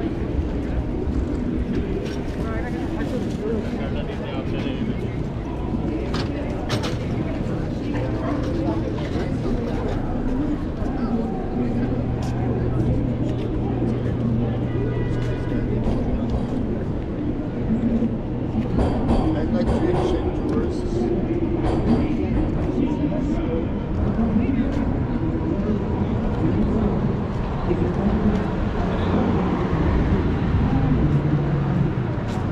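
Busy downtown street ambience: traffic passing and the voices of passers-by, with a steady low hum for several seconds in the middle.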